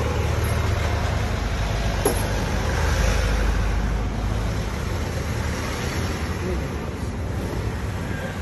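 Steady low rumble of motor-vehicle engine and street traffic noise, with a faint click about two seconds in.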